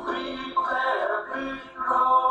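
A group of singers performing a song in held notes, accompanied by an electronic keyboard.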